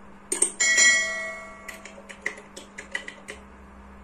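Sound effects of a YouTube subscribe-button animation. A mouse click is followed by a bright bell chime that rings for about a second, then a quick run of about eight light clicks.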